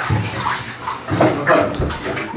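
Water running and splashing in a bathtub.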